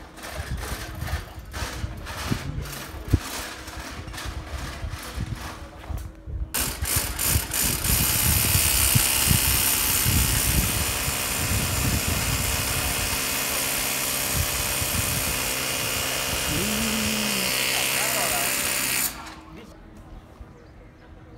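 Loud, steady whirring of an air blower, typical of inflating a pneumatic emergency tent. It comes in after about six seconds of rapid rattling and cuts off suddenly near the end.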